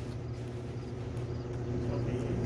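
A steady low hum with no sudden sounds.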